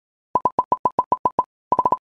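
Electronic blip sound effect: a run of about nine short, identical high beeps, roughly eight a second, then a quicker burst of four near the end.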